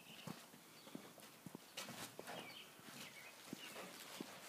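Very quiet outdoor ambience: scattered faint ticks and a few soft, high chirps.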